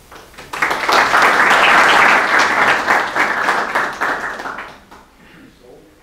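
Small audience applauding, starting about half a second in and dying away just before five seconds.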